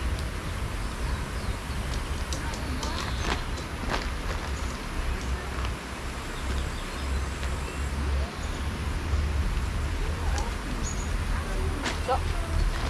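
Light rustling of tent fabric and a few small clicks as a dome tent's poles and clips are handled, over a low, uneven rumble of wind on the microphone.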